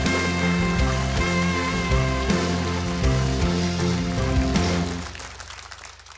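Studio house band playing a short instrumental, bass notes moving under held chords, fading out about five seconds in.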